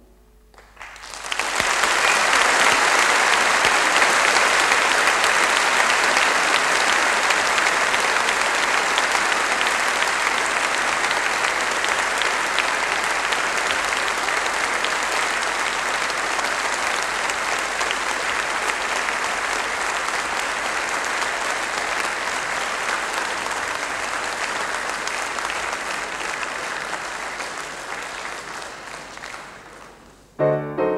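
Audience applauding at the end of a piano piece, swelling in about a second in and slowly dying away near the end.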